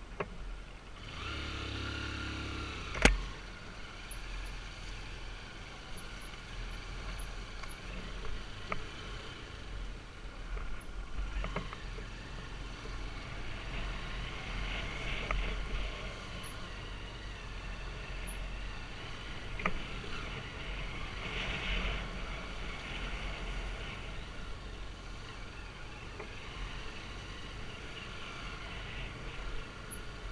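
Dirt bike engine running as the bike rides a narrow, rough dirt trail, with a sharp knock about three seconds in and a few smaller knocks later.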